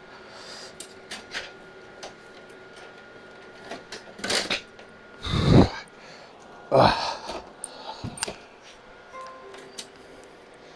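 A metal rackmount server chassis being slid off its rack rails and set down on a concrete floor: clicks and a scrape, then a heavy thud about halfway through, a loud clunk a second and a half later and a smaller knock after it.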